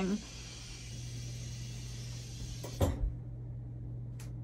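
Air hissing out of the cabin's water pipes, which have not yet filled with water, over a steady low hum. The hiss cuts off suddenly with a knock about three seconds in, and the hum carries on.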